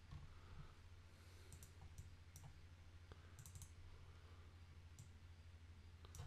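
Faint computer mouse clicks: scattered single clicks and a quick run of three or four about three and a half seconds in, over a low steady hum.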